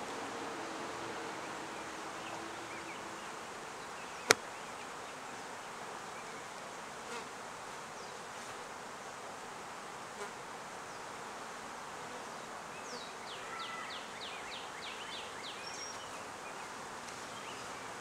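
Honey bees buzzing steadily around an opened hive, with one sharp click about four seconds in.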